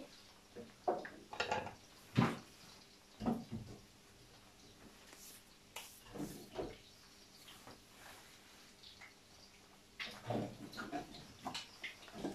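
Faint kitchen handling sounds: scattered light knocks and rustles of a silicone spatula and utensils being moved and set down, the sharpest knock about two seconds in, over a faint steady hum.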